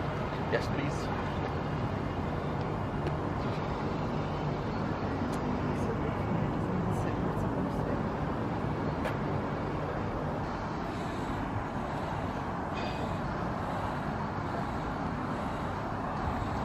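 Steady outdoor rumble of distant road traffic, with faint, indistinct talking.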